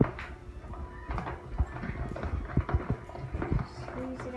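Spoons stirring a thick glue mixture in plastic tubs, knocking irregularly against the sides and bottoms of the containers.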